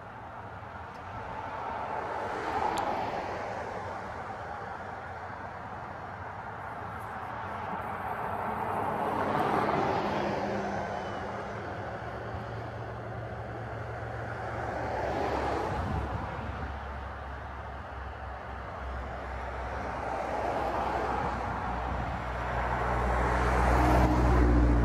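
Road vehicles passing one after another, each swelling and fading, four passes in all. A low engine hum builds in the second half and is loudest near the end.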